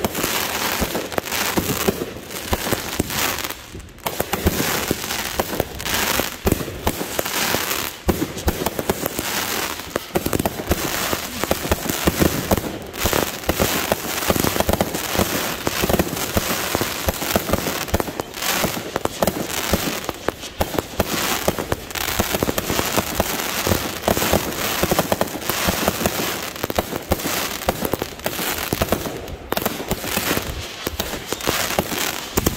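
Consumer aerial fireworks going off in a rapid, unbroken barrage of bangs and crackling, with a brief lull about four seconds in.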